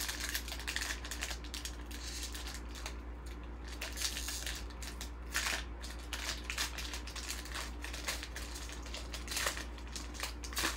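Foil wrapper of a trading-card pack crinkling and crackling as hands peel it open, with a few louder crackles about four, five and a half, and nine and a half seconds in.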